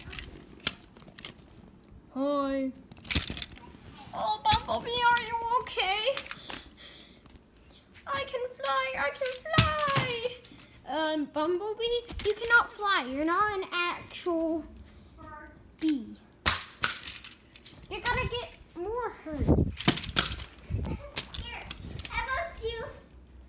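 A child's voice talking and vocalizing indistinctly, with pitch gliding up and down at times, and a few sharp clicks or knocks scattered between.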